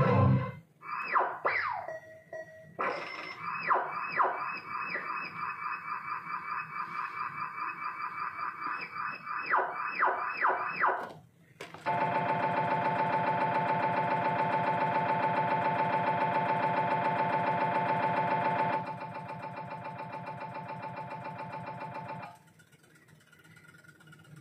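Spanish slot machine game sounds: a fast, repeating electronic jingle of short notes for about ten seconds, then a loud, steady electronic buzz that drops in level about seven seconds later and stops suddenly near the end.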